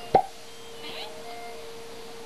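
A single sharp pop just after the start, followed by faint, brief high-pitched vocal sounds over a steady faint hum.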